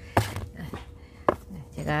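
Two sharp knocks, one just after the start and a louder one about a second later, as a wide shallow basin and a plastic pot of succulents are set down on a wooden tabletop.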